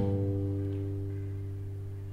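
Low G bass note on an acoustic guitar's sixth string, fretted at the third fret, ringing out alone and slowly fading.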